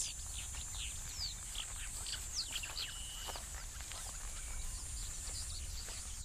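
Scattered bird chirps and short falling whistles over a steady high hiss and a low rumble of open-air background.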